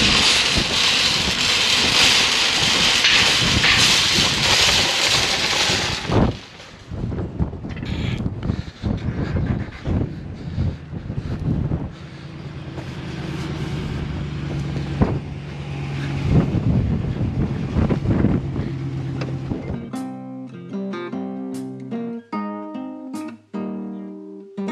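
Shopping cart wheels rattling over cracked asphalt for about six seconds, then quieter, irregular knocks and scrapes. Acoustic guitar music comes in near the end.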